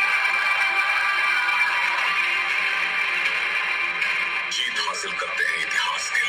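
Film soundtrack heard off a TV screen: steady, sustained background music, with a man's voice coming in over it near the end.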